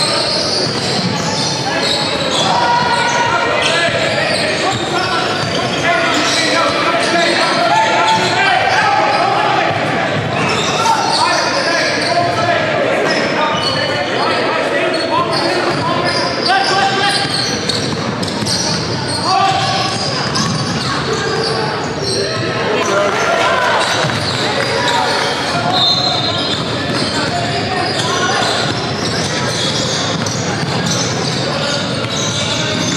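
Sounds of an indoor basketball game: a basketball being dribbled on a hardwood court under steady chatter from many players and spectators, echoing in a large gym.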